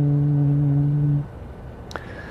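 A man's voice chanting one long, steady note that stops a little over a second in. A faint click follows near the end.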